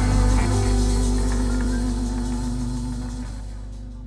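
A live worship band with electric guitar holds its final chord over a heavy bass, and the sound fades steadily away.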